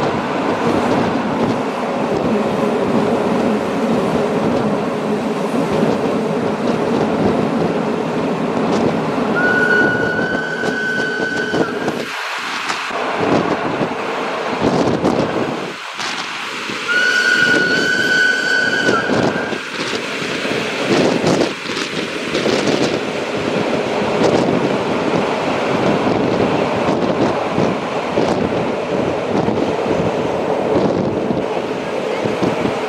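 Narrow-gauge Rhaetian Railway train heard from an open observation car: steady running noise of the wheels on the rails, with wind. Twice, a third of the way in and again just past halfway, a steady high tone lasts about two seconds.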